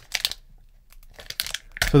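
Foil trading-card pack wrapper crinkling and tearing as it is ripped open at the top: a quick burst of crackles at the start, a pause, then a few faint crinkles.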